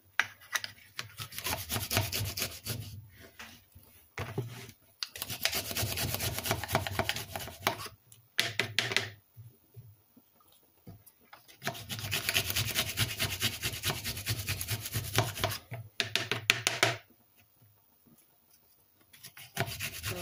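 A clove of fresh garlic rubbed back and forth on a small hand grater: rapid rasping strokes in long bouts, broken by short pauses.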